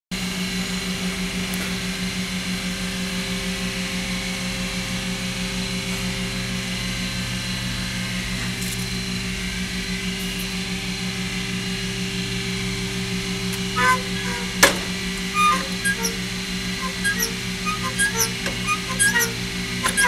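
A motor-driven cycle-test rig runs with a steady hum and a regular pulse. About two-thirds of the way in, its moving linkage starts squeaking in short, repeated chirps, about two a second, with one sharp click among the first squeaks. The squeak is an unwanted fault developing under cycle testing.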